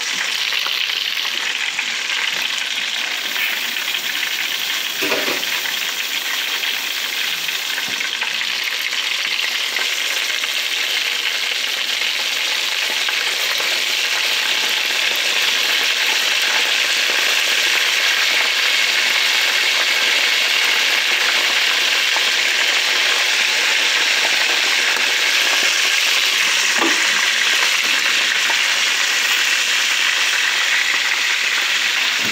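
Unfloured, seasoned chicken wings frying in hot oil in a pan: a steady sizzle that grows a little louder about halfway through.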